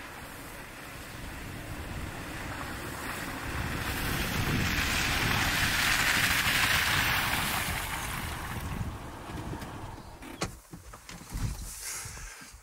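Toyota FJ Cruiser driving slowly over a grassy bush track toward and past, the engine and tyre noise swelling to a peak in the middle and then fading as it pulls up. Near the end come a few sharp clicks and knocks as the driver's door is opened.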